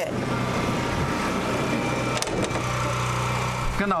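An engine running steadily at idle, with a short click about two seconds in.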